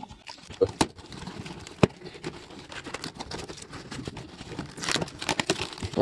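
Handling of a cardboard box and its white polystyrene foam packing as the box is opened by hand: scattered rustling and scraping with a few sharp taps, the loudest about two seconds in.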